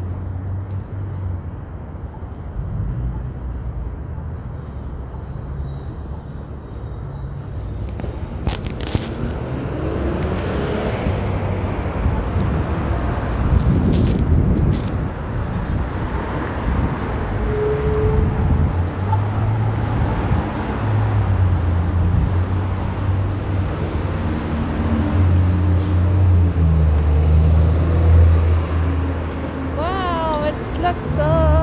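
City street traffic: cars passing with a swell of tyre and engine noise midway, over a low engine rumble from a large vehicle that is strongest in the last few seconds.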